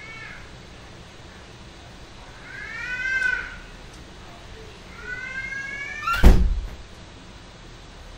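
A cat meowing twice, the first call rising and falling, the second rising, followed by a single loud thump about six seconds in.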